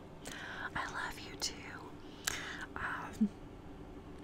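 A woman whispering close to the microphone, in short breathy phrases with no voiced pitch.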